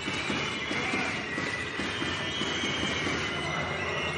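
Basketball arena during live play: steady crowd noise with high, wavering squeaks of sneakers on the hardwood court.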